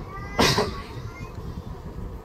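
A single short voice-like cry with a falling pitch about half a second in, over low room noise.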